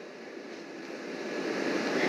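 Steady background hiss picked up by a phone microphone, slowly growing louder.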